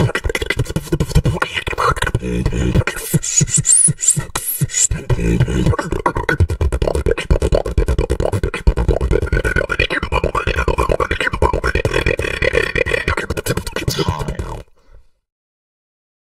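Human beatboxing: a fast, dense stream of vocal kicks, snares and clicks over a deep vocal bass, which cuts off abruptly shortly before the end.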